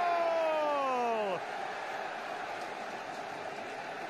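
A football commentator's long, drawn-out goal shout, held and slowly falling in pitch until it breaks off about a second and a half in, followed by steady crowd noise.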